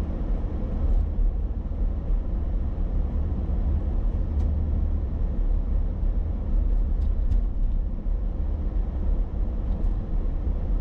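Steady low rumble of a car on the move, engine and road noise heard from inside the cabin, with a few faint clicks.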